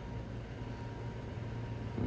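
Quiet, steady background room tone from a recording set-up: a low hum with faint hiss and a thin steady high tone, with no distinct events.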